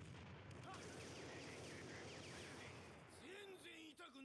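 Very faint soundtrack of a superhero fight scene playing quietly in the background: a low haze of battle sound effects, with a short line of spoken dialogue near the end.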